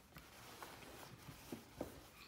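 Faint handling sounds of a rum bottle's presentation box being opened: a few small taps and clicks, otherwise near silence.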